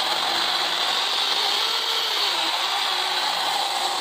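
A 24-volt cordless mini chainsaw running steadily under load, its chain cutting through a log of green ipê hardwood.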